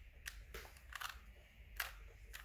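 A 3x3 Rubik's cube being turned by hand, its plastic layers giving a few faint clicks, the loudest near the end.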